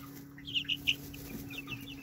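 A group of three-week-old chicks peeping: short, high, falling peeps in quick clusters, over a steady low hum.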